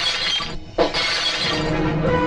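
Film sound effect of glass breaking: a crash at the very start and a second one about a second in, each with a ringing shatter, over dramatic background music.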